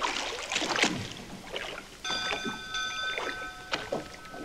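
Boat-at-sea sound effects: repeated swishes of water against a hull. About two seconds in, several steady high tones come in and are held together.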